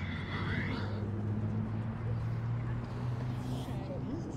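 A low, steady engine drone, its pitch stepping up slightly about a second in and again near the middle, with a brief hiss at the very start.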